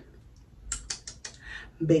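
A quick run of about six or seven sharp clicks lasting under a second, in a short pause in talking.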